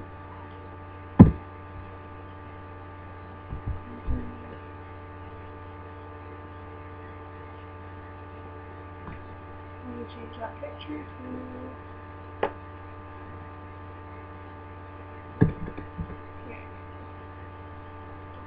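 Steady electrical hum with a row of overtones, picked up in the recording, broken by a few sharp knocks or clicks. The loudest knock comes about a second in, with smaller ones around four seconds, twelve seconds and fifteen seconds.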